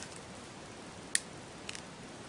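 Low steady background hiss with one sharp click a little over a second in, followed by two faint ticks.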